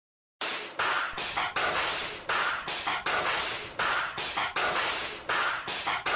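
Percussion-only opening of a hip-hop beat: sharp drum-machine hits in a steady pattern that repeats about every second and a half, starting about half a second in after silence.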